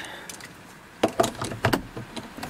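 A quick run of sharp clicks and rattles, about half a dozen in under a second, starting about a second in: a car key being handled at the ignition.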